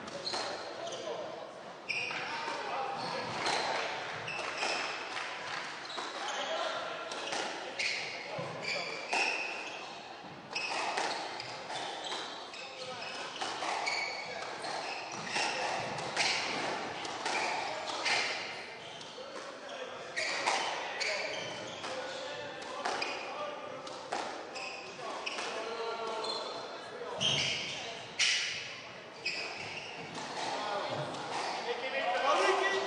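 A squash ball being struck by rackets and hitting the court walls and floor, sharp knocks at irregular intervals echoing in a large hall, with voices in the background.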